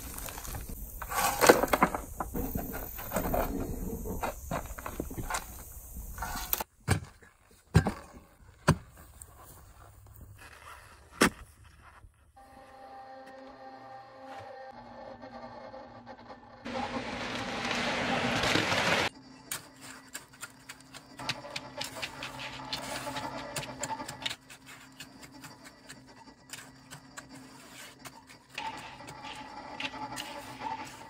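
A shovel digging and scraping through rocky clay soil, with dense strikes and gritty scrapes. It stops, and after a few sharp knocks comes a steady hum, then a loud rush of noise for about two seconds. A long stretch of fine scraping follows as a hand float smooths wet concrete.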